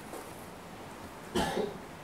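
A man's single short cough about one and a half seconds in, against quiet room tone.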